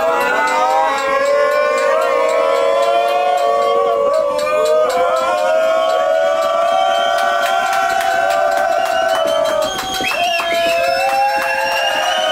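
A group of men chanting loudly together in long, wavering held notes, many voices overlapping, with scattered sharp claps. The chant dips briefly about ten seconds in, then swells again.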